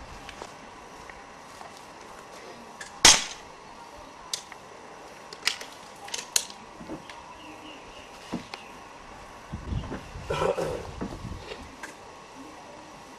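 A single sharp shot from an air gun about three seconds in, followed by a few lighter clicks and knocks, and a cluster of muffled knocks near the end.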